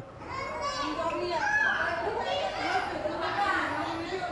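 Toddlers babbling and calling out in a crowded nursery hall, several small voices at once over the chatter of women.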